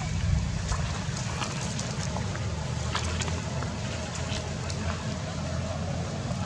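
Wind buffeting an outdoor microphone: a steady low rumble with a few faint ticks over it.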